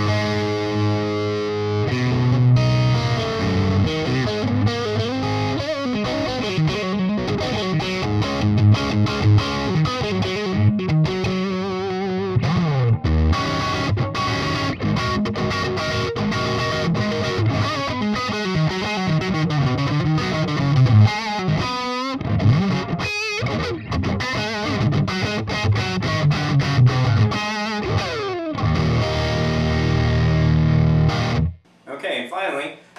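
Distorted electric guitar: a Fender Nashville Telecaster with DiMarzio pickups switched to parallel mode for a thinner, more Telecaster-like tone, played loud through a Splawn Quick Rod 100-watt head and 2x12 cabinet. Heavy rhythm playing with sliding and bending notes, ending on a held chord.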